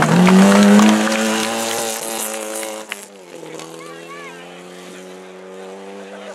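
Rally car engine revving hard and held at high revs as the car slides through a gravel corner, the pitch climbing at first. About three seconds in it cuts to a quieter, steady engine note of another rally car approaching from a distance.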